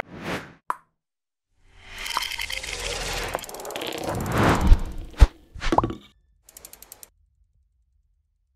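Sound effects of an animated news-channel logo ident: a brief whoosh and a click, a swell that builds for a couple of seconds, two sharp hits a half-second apart, and a quick run of ticks near the end.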